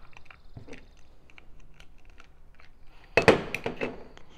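Faint, scattered clicks and taps of hands handling an electric linear actuator as its end cap is worked off the gearbox housing.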